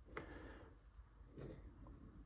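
Near silence with two faint handling sounds, about a quarter second in and again around one and a half seconds in, as a small plastic carburetor float and its needle are picked up off a workbench.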